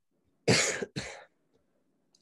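A man coughing twice in quick succession; the first cough is the louder and longer.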